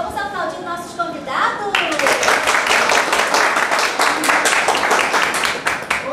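A small group clapping, starting about two seconds in and going on for about four seconds, after a few voices calling out.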